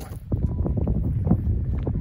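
Wind buffeting the microphone: an irregular low rumble.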